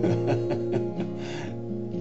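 Steel-string acoustic guitar being fingerpicked: single notes plucked about three times a second over a chord left ringing.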